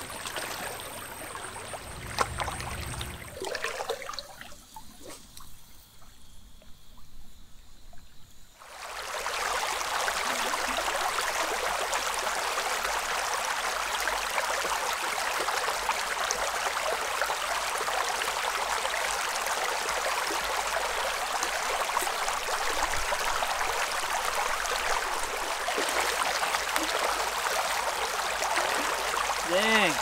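Shallow stream riffle running over rocks close to the microphone: a steady rush of water that starts suddenly about nine seconds in and holds even after that. Before it the water is quieter.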